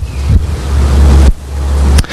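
Loud low rumble with a hiss over it, noise on the microphone, dipping briefly a little past halfway.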